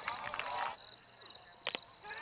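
Insects trilling steadily in a high, finely pulsing tone. Near the end comes a single sharp crack of a cricket bat striking the ball.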